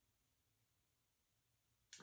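Near silence: room tone, with the start of a woman's voice at the very end.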